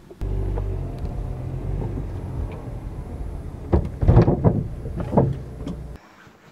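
Car engine running steadily, heard from inside the cabin, with a few louder thumps about four to five seconds in.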